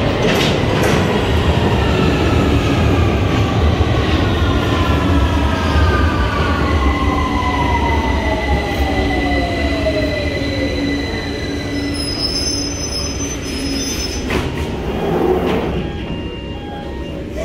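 London Underground Victoria line 2009 Stock train running into the platform and braking to a stop, its motor whine falling steadily in pitch over the rumble and squeal of the wheels. The doors open near the end.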